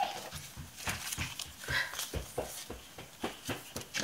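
Irregular light knocks and taps, a few each second.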